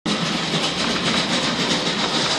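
Märklin My World battery-powered toy train running on its track: a steady high motor whine over a light rattling clatter of wheels and track.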